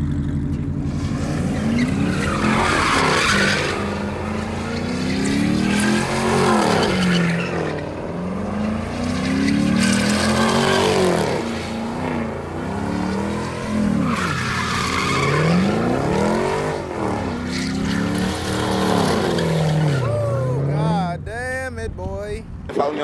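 Car doing donuts: the engine revs up and falls back over and over, about every two to four seconds, with the tires squealing and spinning on concrete at each rise.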